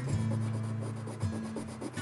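Coloured pencil scratching on paper in quick, even back-and-forth shading strokes.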